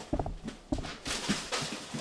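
Footsteps and shuffling movement on a floor, irregular knocks and scuffs, with a short vocal sound near the start.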